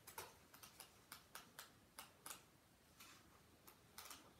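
Pages of a book being flipped through quickly, faint irregular flicks a few times a second.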